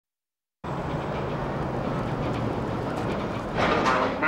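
Steady rumbling noise, like traffic, starting about half a second in after silence. Near the end a louder, pitched sound cuts in.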